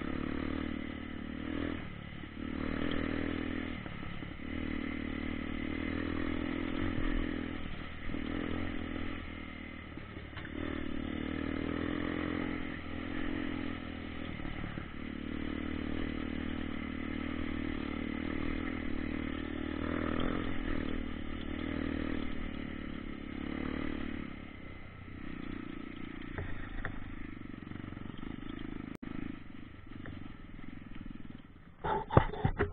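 Dirt bike engine running as the bike rides a rough trail, heard from on board, its sound swelling and easing every few seconds as the throttle is opened and closed.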